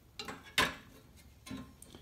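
Metal mower parts being handled: a brief scrape, then one sharp metallic clink about half a second in and a lighter knock near the end.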